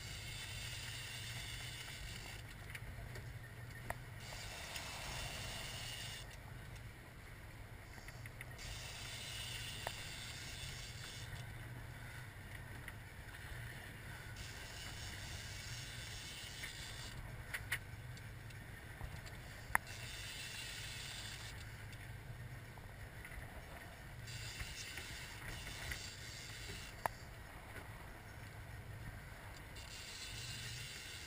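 Boat engine running steadily as a low hum, under a hiss of water and wind that swells and fades every few seconds, with a few sharp clicks.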